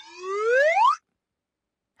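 Game-show sound effect: one rising, boing-like pitched glide that grows louder over about a second and cuts off suddenly.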